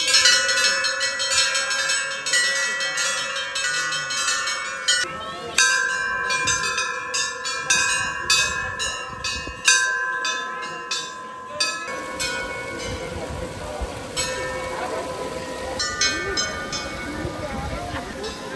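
Hanging brass temple bells rung by hand in quick, irregular succession, their ringing tones overlapping. The strikes are dense for about twelve seconds, then thin out to a few now and then over crowd chatter.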